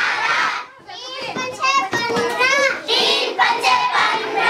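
A roomful of children's voices calling out together in high-pitched, sing-song phrases, with a brief pause just under a second in.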